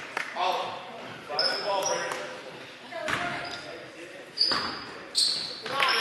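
Basketball game sounds in a gym: a basketball bouncing on the hardwood court, short high squeaks of sneakers, and shouts from players and spectators, all echoing in the hall.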